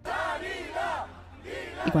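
A crowd of people shouting together in unison, like a protest chant, in two bursts.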